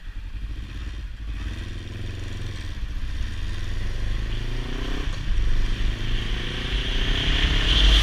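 Motorcycle engine accelerating, its pitch rising, dipping at a gear change about five seconds in, then rising again. Wind noise on the microphone grows louder as speed builds.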